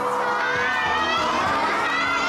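Audience shouting and cheering, many high-pitched voices calling out at once, in answer to being asked whether the girl or the boy should win.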